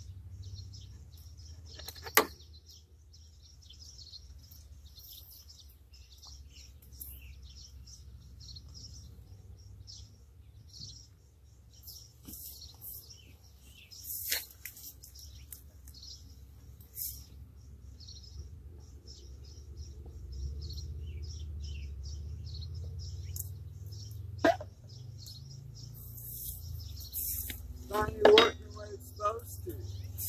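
Small birds chirping on and off, over a low steady rumble that grows louder about two-thirds of the way through. A few sharp clicks and knocks break in, the loudest a few seconds in and near the end, as the hive's wooden parts are handled.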